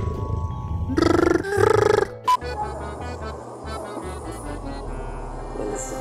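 A cat making two loud, buzzing, pulsing calls one after the other about a second in, then background music with low bass notes for the rest.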